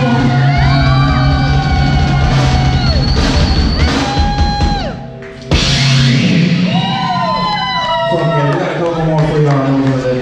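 A live rock band playing loud, with electric guitar, bass and drums and many sliding, bending pitches. The sound drops out briefly about halfway through, then comes back in full.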